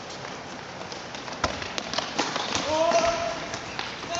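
Indoor football on a sports-hall court: sharp knocks of the ball being kicked and feet on the hard floor, the loudest about one and a half seconds in, then a held shout from a player near the end.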